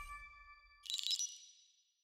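Studio logo sting sound effect: the ringing tail of a chord with a low rumble fades away, then a bright high ding about a second in rings out and fades.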